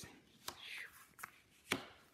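Sheets of collage paper being handled: a sharp tap, a short rustle, then two more taps, the last the loudest.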